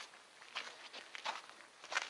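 Footsteps crunching on a sandy gravel path, a handful of steps at a walking pace.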